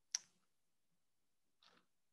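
Near silence, broken by one short, sharp click just after the start and a faint brief sound near the end.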